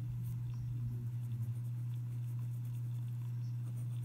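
Ballpoint pen (BIC Round Stic) scratching short strokes on paper, over a steady low hum.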